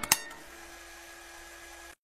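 Two short clicks just after the start, then a faint steady hiss with a low hum, which cuts off just before the end.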